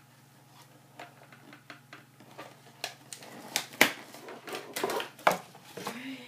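Cardboard packaging being handled and pulled apart by hand: a run of light clicks, scrapes and rustles that grows busier, with a couple of sharper knocks, the loudest a little past the middle.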